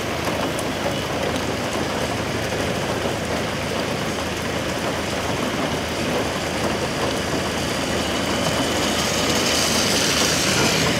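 Road traffic moving through rain on a waterlogged street: a steady wash of rain and vehicle noise.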